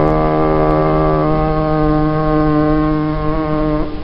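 Male voice chanting a khassida, holding one long steady note whose vowel changes about a second in, ending shortly before the end.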